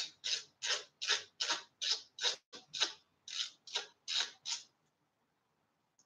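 A run of about a dozen light mechanical clicks, roughly three a second, from a hand tool working screws on a mountain bike's chain-guide mount. The clicks stop about four and a half seconds in.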